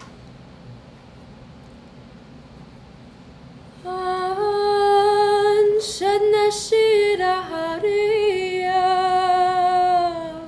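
A teenage girl singing a song in Arabic unaccompanied into a microphone. She starts about four seconds in, holding long notes that bend gently in pitch.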